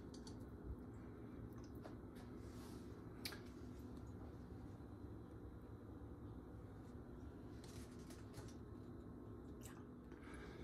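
Near silence: a low steady room hum with a few faint, scattered clicks and taps.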